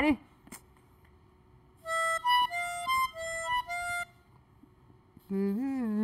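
A recorder playing a short phrase of about seven clear, steady notes that alternate between a lower and a higher pitch.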